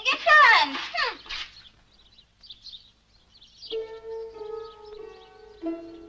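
A high voice with sliding pitch for the first second and a half, then film background music on plucked strings, sitar-like, that comes in about two-thirds of the way through with held notes.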